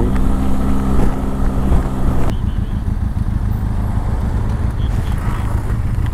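Motorcycle engine running at a steady speed with wind noise on the microphone. About two seconds in the sound cuts abruptly to a lower, rougher engine note with less wind.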